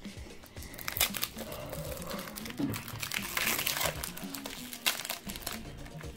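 Foil Pokémon trading-card booster pack wrapper crinkling as it is handled and torn open by hand, an irregular run of small crackles.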